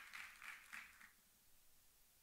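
Faint audience applause dying away in a large hall, a few scattered claps in the first second, then near silence.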